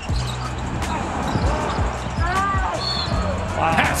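Background music with a steady bass line over basketball game sound: a ball dribbling on the hardwood court, with a few short squeaks about halfway through.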